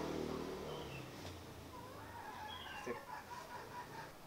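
Faint, wavering animal calls, bird-like, with a low hum that fades out about a second in.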